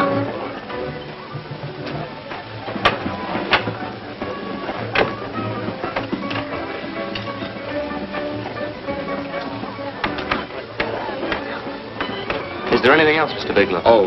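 Old film soundtrack: music plays with voices in the background and a few sharp clicks or knocks about three to five seconds in; a man's voice comes in near the end.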